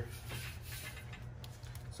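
Quiet room tone: a steady low hum with a few faint clicks around the middle.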